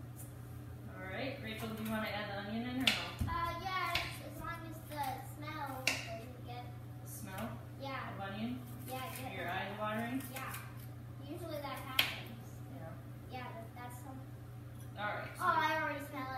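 Indistinct talking that the recogniser did not catch, with a few sharp knocks of a knife on a cutting board as an onion is cut, over a steady low hum.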